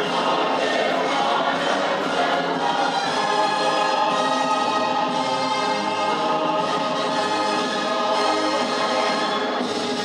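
A group of children singing together, choir-style, with long held notes.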